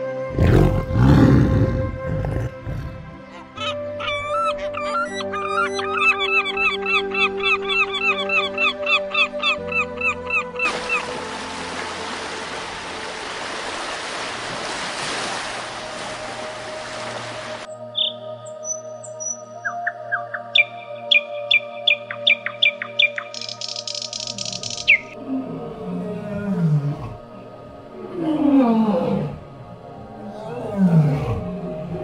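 Background music under a succession of different animal calls. There is a low call at the start, then a long run of rapid repeated chirps, then several seconds of steady rushing noise. After that come scattered chirps and clicks, and falling calls near the end.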